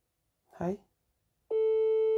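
Telephone ringback tone through a phone's loudspeaker: a steady tone starts about one and a half seconds in, one ring of an outgoing call going unanswered.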